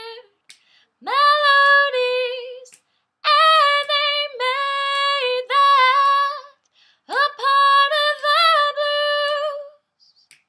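A woman singing a cappella, unaccompanied, in three long phrases of held notes with short breaths between them.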